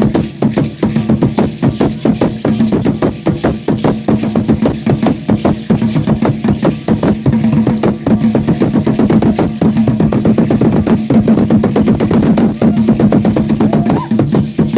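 Drumming for an Aztec dance: a large upright wooden drum beaten in a steady, fast rhythm, with the rattling of the dancers' ankle rattles over it.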